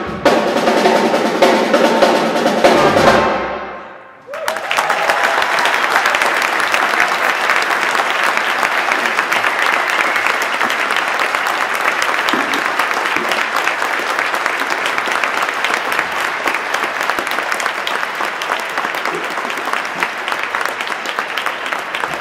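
A jazz combo of trumpet, trombone, drum kit, double bass and vibraphone finishes a piece on a held final chord that dies away about four seconds in. Audience applause follows at once and runs steadily, slowly easing off.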